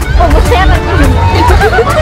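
Several children's voices chattering over each other, over background music with heavy bass.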